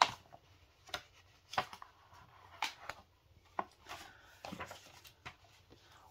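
Paper pages of a picture book being turned and handled: short rustles and light taps, about one a second.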